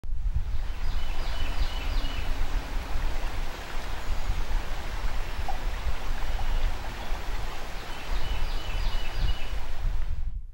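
Steady rushing of river water, with heavy low rumble underneath. A few short, high chirps come near the start and again near the end.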